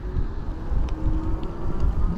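Wind rumbling on the microphone and road noise from a moped-style electric bike riding slowly along a street, with a faint steady whine underneath.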